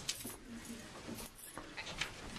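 Quiet room noise with a few brief rustles, as of paper being handled, and a faint low murmur of voices.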